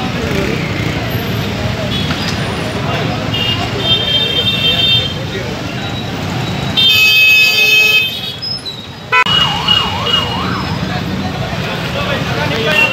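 Street noise of people talking and motorbike and car traffic. Vehicle horns sound a few seconds in, and the loudest horn blast comes at about seven seconds. Just after nine seconds there is a brief, rapidly warbling siren-like tone.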